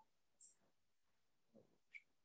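Near silence, with two or three faint, very short noises.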